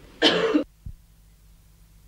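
A man's single cough, about half a second long, followed by a short soft thump; after that only a faint low hum remains.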